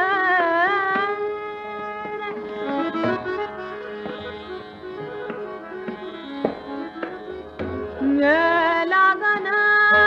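Hindustani classical female vocal in Raga Malkauns with tabla accompaniment. The voice holds and bends long notes, drops out for a softer stretch where the accompaniment and tabla strokes carry on, then comes back loudly about eight seconds in.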